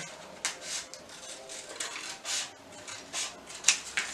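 Scissors cutting through a stiff sheet of backed paper: a run of short snips, about two to three a second.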